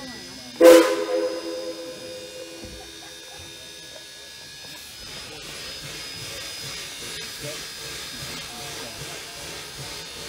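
Steam whistle of the 1929 Heisler geared steam locomotive giving one short blast about half a second in, a chord of several tones with a burst of hiss, dying away over about two seconds. From about halfway on, a steady, even rushing background.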